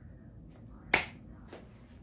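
A single sharp finger snap about a second in, followed by a fainter click about half a second later.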